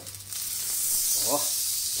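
Beef rump cap sizzling on a hot charcoal grill grate as it is flipped over to sear the other side. The sizzle jumps up sharply just after the start and then holds steady.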